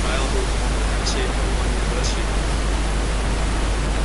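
Steady hiss of background noise with a low hum underneath, even and unchanging, with no distinct sound event in it.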